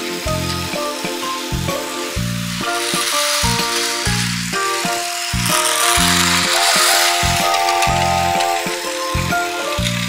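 Background music with a steady pulsing bass line and changing notes. Under it runs the mechanical rattle of battery-powered Plarail toy trains moving along plastic track.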